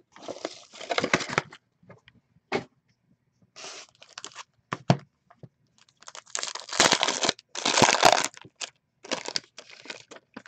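Wrapping on a box of trading cards and its packs being torn open and crinkled by hand, in several irregular bursts of tearing and rustling with small clicks and handling noises between; the loudest tearing comes in two bursts in the second half.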